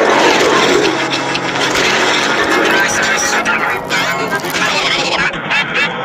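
A dense, loud jumble of many soundtracks playing over one another at once: voices and music piled together into a continuous din with no single sound standing out.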